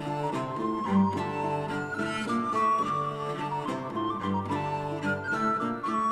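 Renaissance instrumental dance played on recorder, lute and bass viol: the recorder carries a held melody over plucked lute notes and a low bowed bass line.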